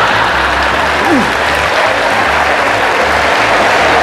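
Large theatre audience applauding steadily.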